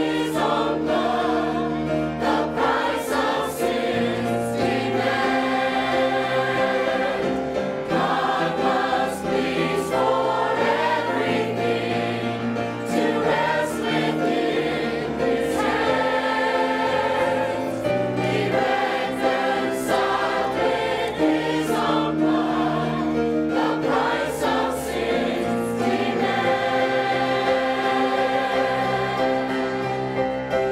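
Mixed church choir of men and women singing a sacred song in sustained chords, conducted.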